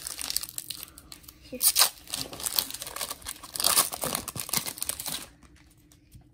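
Foil booster-pack wrapper being torn open and crinkled by hand, a dense crackling that peaks about two seconds in and again near four seconds, then stops about five seconds in.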